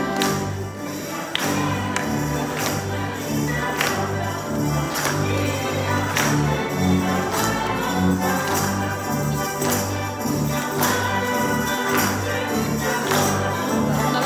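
Congregation singing an upbeat song with instrumental accompaniment and steady rhythmic hand clapping.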